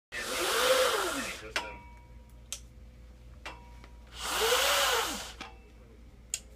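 Fabric backdrop screens pulled down off overhead spring rollers, twice: each a whirring rush of about a second whose pitch rises and then falls as the roller spins up and slows, with a few sharp clicks in between.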